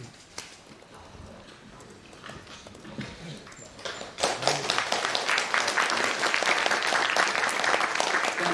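Audience applause that breaks out suddenly about four seconds in and keeps going, a dense patter of many hands clapping; before it, only low room noise with a few scattered knocks.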